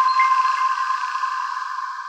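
The held final tones of a channel's electronic logo jingle, a sustained ringing tone that fades slowly.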